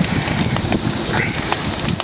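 Large bonfire of dry brush and scrap wood burning hard: a dense, steady rush of flame with a handful of sharp crackling pops from the burning wood.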